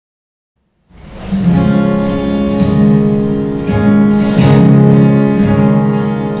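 Silence for about a second, then an acoustic guitar starts strumming the song's opening chords, which ring on between strokes.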